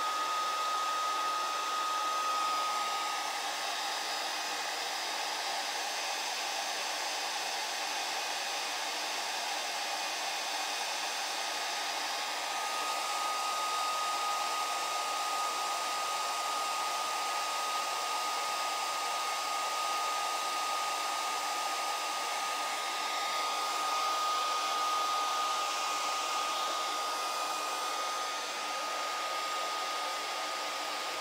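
Handheld hair dryer running steadily: an even rush of blown air with a steady high whine from its motor. The sound swells and dips slightly as the dryer is swept back and forth over the leather.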